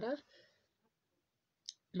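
One short, sharp click about three-quarters of the way in, in an otherwise near-silent pause after a voice trails off.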